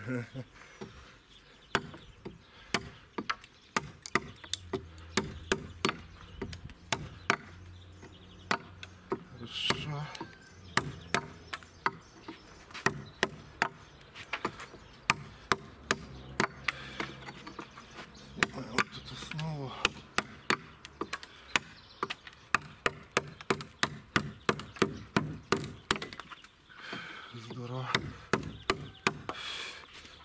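Rubber-sleeved mallet striking a woodcarving chisel, driving the blade into a wooden beam, blow after blow at an uneven pace that quickens in runs to two or three a second.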